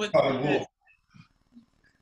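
A person's voice in one short, loud burst of about half a second at the start. After it comes near quiet, broken by a few faint small knocks.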